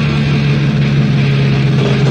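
Instrumental passage of a metallic hardcore punk demo recording: loud distorted electric guitar and bass, with one low note held steady through most of it.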